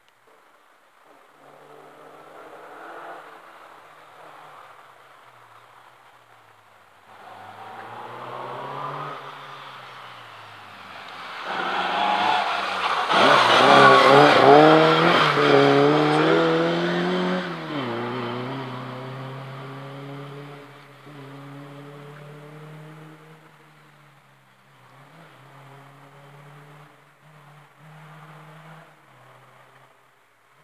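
Subaru rally car at full power on a stage, its engine note climbing and dropping through gear changes as it approaches, loudest about halfway through as it passes, then fading away into the distance.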